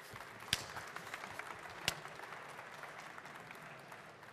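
Audience applauding, with a few sharper single claps standing out, the clapping dying away toward the end.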